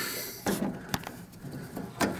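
Quiet handling noise with two light clicks, about half a second and a second in, as a hand pulls at a lawn tractor's drive belt.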